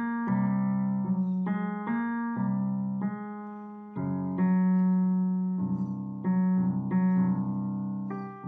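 Piano playing a slow, gentle piece: chords and single notes struck every half-second to second and a half over a held low bass, each ringing and fading before the next.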